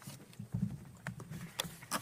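Hard-soled footsteps on a hard floor: a few irregular knocks about two a second over a low room hum.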